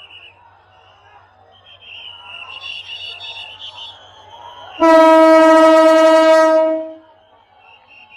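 Diesel locomotive's horn sounding one long, loud blast on a single steady pitch, starting nearly five seconds in and lasting about two seconds, over faint crowd noise.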